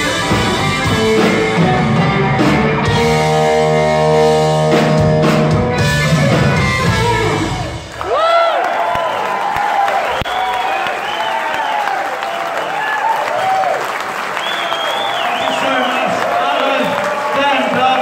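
Live rock band with electric guitars, bass and drums playing the closing bars of a song, holding a final chord before the music cuts off about eight seconds in. An audience then cheers, shouts and applauds.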